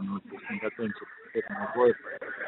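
A man speaking over a telephone line, most likely the answer in Russian to the question just put to him.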